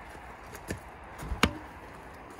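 Two sharp knocks, like wood being struck: a lighter one under a second in, then a louder one later.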